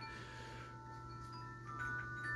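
Soft ringing chime tones at several pitches, held and overlapping, with new notes coming in near the end.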